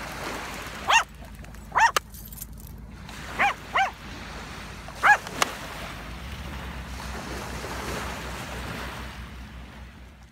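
A small dog yapping: about five short, high barks in the first five seconds, over the steady wash of small waves on the shore.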